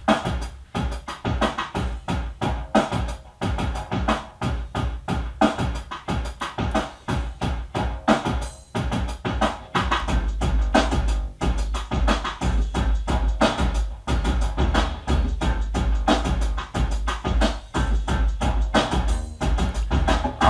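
Electronic drum-machine groove from an Alesis SR-18, with other instruments sequenced alongside it over MIDI, playing a steady repeating beat. The bass gets heavier about halfway through.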